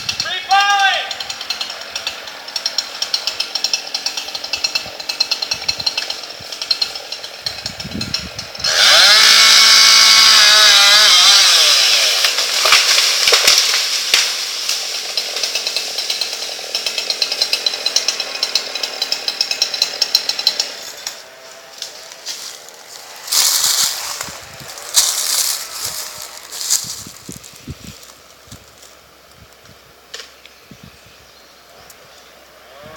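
Chainsaw idling with a rapid rattle. About a third of the way in it is run up to full throttle for about three seconds, then drops back to idle.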